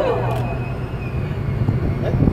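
Low, steady rumble of a tour bus engine heard from the open top deck, with a voice trailing off in the first half second.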